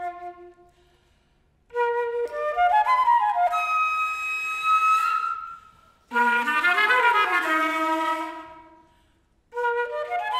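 Concert flute playing short phrases that stop and start with brief pauses between them, near one, six and nine and a half seconds in. In the middle phrase a lower tone slides up and back down beneath the flute's notes.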